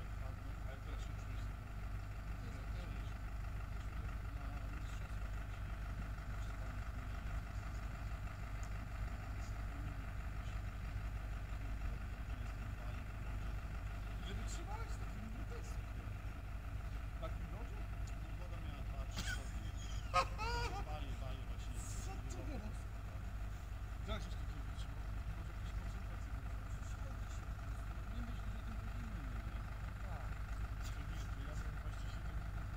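Steady low rumble of wind buffeting the microphone, under faint distant voices. About twenty seconds in there is a sharp click, then a short wavering call.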